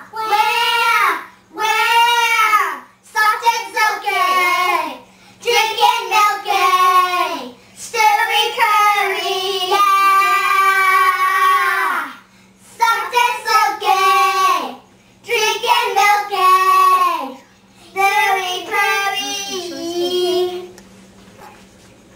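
A girl singing to a baby to soothe it and stop its crying, in a string of short sung phrases with gliding pitch and brief pauses between them, one longer held passage about halfway through.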